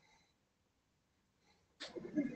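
Near silence on the call line, broken near the end by one short breathy burst of noise.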